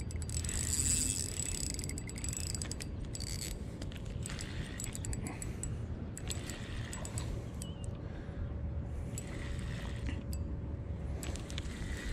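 Spinning reel's drag clicking in irregular runs as a hooked largemouth bass pulls line against it, along with the reel being wound.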